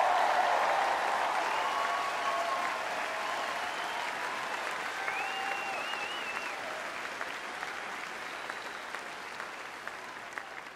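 Large rally crowd applauding with scattered shouts and whoops, loudest at first and gradually dying away.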